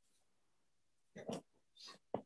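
Near silence, broken by two faint, brief noises: one a little over a second in and one near the end.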